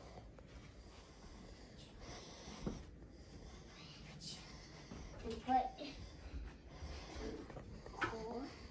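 A young girl speaking a single word, against faint movement noise, with one soft knock about two and a half seconds in.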